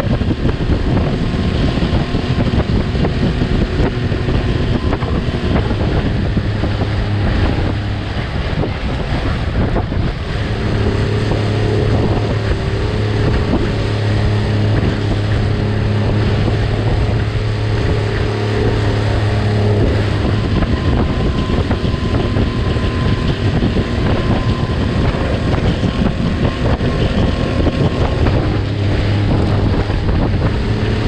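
Small speedboat's engine running steadily at speed, a low hum that grows stronger from about ten seconds in and again near the end, with wind buffeting the microphone and water rushing past the hull in choppy sea.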